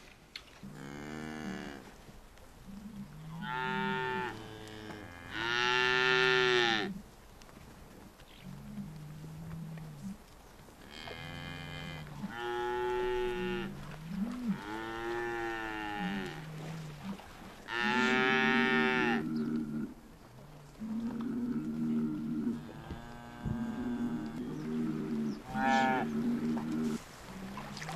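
A herd of cattle mooing: about ten calls, each roughly a second long, at differing pitches from several cows and calves, some overlapping near the end.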